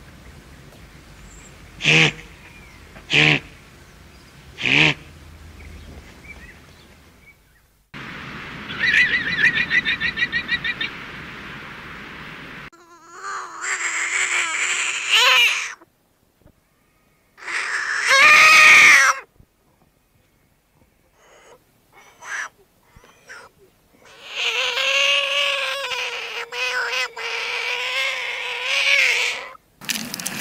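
Guanaco calls: three short, sharp cries a second or so apart, then a fast trill. Then a horned frog calling: short croaks, one loud squawk with a falling pitch, and a long pulsing croak near the end.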